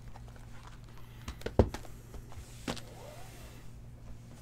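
Shrink-wrapped cardboard trading-card hobby boxes being handled and slid about on a table, with a few light knocks, the sharpest about a second and a half in, over a low steady hum.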